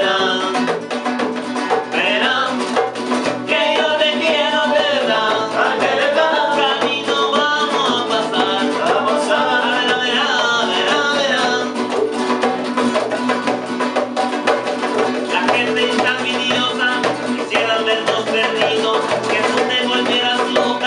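Live acoustic Spanish rumba: two nylon-string classical guitars strumming a rumba rhythm over a hand drum, with voices singing. The singing drops out for a few seconds past the middle, leaving the guitars and drum, then comes back.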